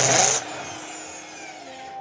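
Corded electric drill running at full speed for about half a second, spinning a wooden rod down through a dowel plate so the wood is shaved round into a dowel, loud and rasping. It is then released and winds down with a falling whine.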